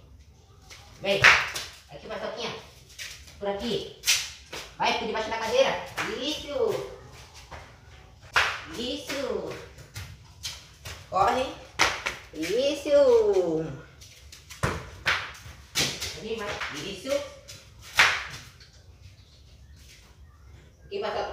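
Indistinct human voices, not clear enough to make out words, with scattered sharp clicks and knocks throughout.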